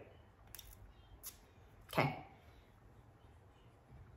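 Two short hisses from a small perfume sample spray vial, about half a second apart, in the first second and a half.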